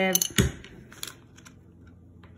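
Small plastic Lego minifigure pieces clicking and tapping on a wooden tabletop as they are handled. There is one sharp knock about half a second in, then a few lighter clicks.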